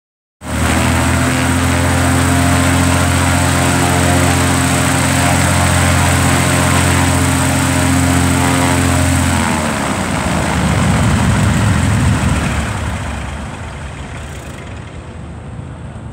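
Cessna 310's piston engines running steadily at run-up power, then throttled back about nine and a half seconds in, the pitch falling as they slow. A couple of seconds of rushing air noise follow, and the sound then drops to a lower, quieter run near the end.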